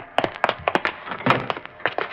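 A quick, irregular series of knocks and taps, a radio-drama sound effect.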